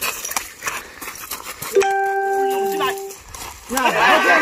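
Men's voices during an outdoor ball-kicking game: a few light taps early on, then one voice holds a long, steady 'oooh' for about a second while others talk, and the group breaks into overlapping shouts near the end.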